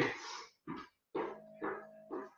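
A man breathing hard in short puffs, about two a second, in time with jumping jacks.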